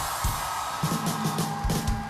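Rock drum kit played in a short burst of kick-drum hits and cymbal crashes, a few uneven strokes, over a steady held note; the drummer is answering his introduction.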